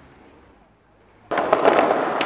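A quiet second, then about a second and a half in, the loud, gritty roll of skateboard wheels on rough sidewalk pavement starts suddenly, close by, with a few sharp clicks.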